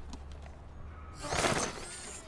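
A short, loud crash-like burst of noise about a second in, lasting under a second, over a low steady hum that gives way at the burst.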